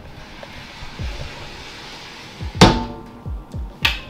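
Mirrored sliding closet doors rolling along their track, then banging against their stops twice: a sharp, ringing bang about two and a half seconds in and a second near the end.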